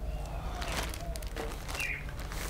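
Faint crinkling of a clear plastic bag being handled: a few soft crackles over a low steady hum.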